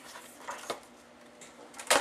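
Cardstock and a paper trimmer being handled on a tabletop after a cut: faint rustling, a light click, then a single sharp knock near the end.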